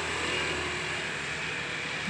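Steady noise of road traffic going by, with no sharp sounds.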